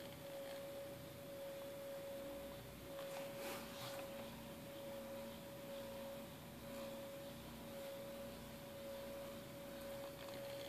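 Small CD-ROM spindle motor spinning a stack of three CDs at full speed, giving a faint, steady, high-pitched whine. A second, lower tone joins about three seconds in.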